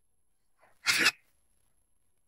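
A single short whoosh about a second in, a burst of rushing noise lasting about a quarter of a second: a sound effect for glowing healing energy being pushed into a body.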